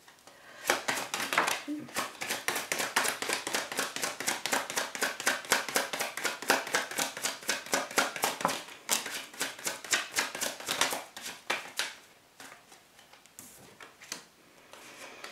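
A tarot deck being shuffled by hand: rapid card taps and slaps, several a second, for about eleven seconds, then stopping. Near the end, cards are set down on the wooden table.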